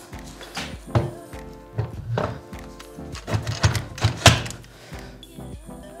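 Several clunks of a steel hitch bike rack's bar going into a wall-mounted Rack Stash hitch receiver, the loudest about four seconds in, over background music.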